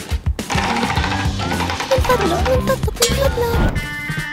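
Background music over the rapid ticking of a spinning prize wheel, its flapper pointer clicking past the pegs on the rim.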